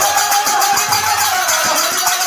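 Bengali kirtan music: a khol drum beating under fast, evenly spaced strokes of small hand cymbals (kartal), about seven or eight a second, with a voice holding a wavering chanted line.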